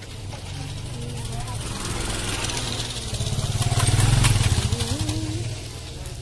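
A motorcycle passing close by: its engine builds to loudest about four seconds in, then fades, over faint chatter from a crowd.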